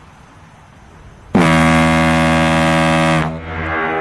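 A ship's whistle gives one long, steady blast of about two seconds, starting suddenly about a second and a half in.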